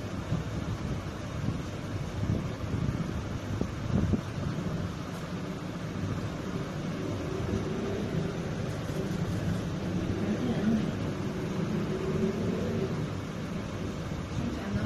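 Steady low background rumble and hiss, with faint, indistinct voices in the background through the second half.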